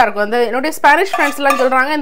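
A metal slotted spoon clinking and scraping against a non-stick frying pan as fried potato and onion slices are scooped out. A voice carries on throughout.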